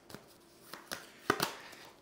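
A deck of tarot cards being shuffled by hand: a few soft, separate card flicks and taps, the sharpest about two-thirds of the way through.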